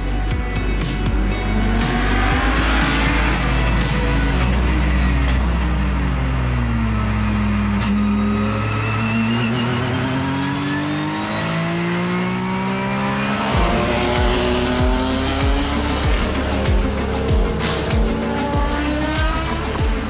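Late-1990s and early-2000s endurance racing cars, prototypes and GTs, running hard on track: engine pitch falls and then climbs back up through the gears. After a cut at about two-thirds of the way through, engines rise in pitch again over an even music beat.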